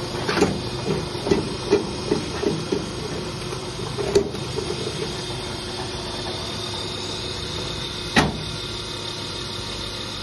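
Interlocking block-making machine running with a steady motor hum. A quick series of metal clunks comes in the first three seconds as its handles and mould are worked, another clunk comes about four seconds in, and a single sharp metal knock comes about eight seconds in.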